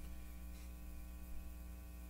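Low, steady electrical mains hum with faint hiss on the broadcast audio line.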